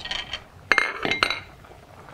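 Cookware clinking: a pot lid set down and knocking against the stainless steel pots, with two sharp clinks about halfway through that ring briefly.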